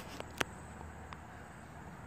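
Quiet outdoor background with a faint steady hiss, broken by one sharp click less than half a second in and a few fainter ticks.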